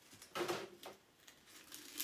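Brief handling sounds of spice packages being moved about a pantry shelf: one short rustle about half a second in and a fainter one just after.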